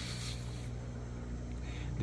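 Steady low background hum with an even, unchanging pitch.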